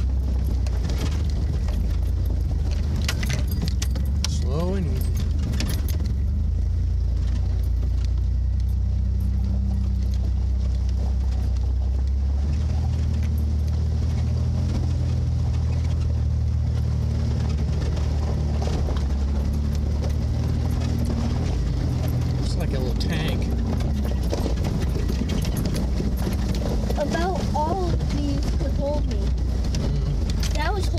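The 4x4's engine runs low and steady as the truck crawls through an icy, flooded creek, with the note rising slightly about twelve seconds in. Scattered knocks and clinks come a few seconds in and again near the end.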